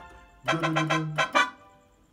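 Keyboard playing a short riff in C major: a few quick repeated notes over a held low note, starting about half a second in and dying away after about a second. It is the song's horn line, mi-mi-fa (E-E-F).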